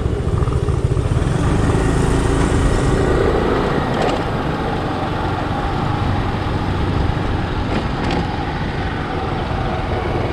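Motor scooter running at steady riding speed, its engine sound mixed with continuous wind and road noise, heaviest in the low end.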